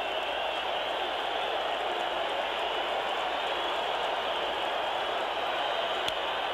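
Large ballpark crowd making a steady, dense din of many voices and cheers, with no single sound standing out.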